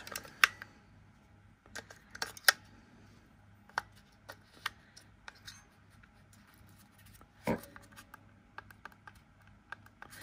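AA batteries snapped one by one into a plastic battery compartment against its spring contacts, a series of sharp clicks and taps of hard plastic being handled. The toy itself gives no sound: it still isn't working.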